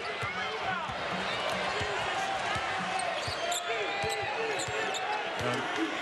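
A basketball dribbling on a hardwood court, with sneakers squeaking, over steady arena crowd noise.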